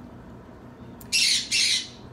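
Pet parrot squawking: one loud, harsh squawk about a second in, lasting under a second with a brief break in the middle.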